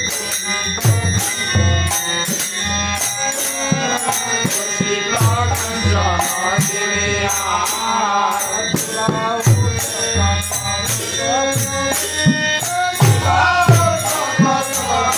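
Bengali kirtan: men singing a devotional song to harmonium, with a khol drum and small hand cymbals keeping a steady beat of about two strokes a second.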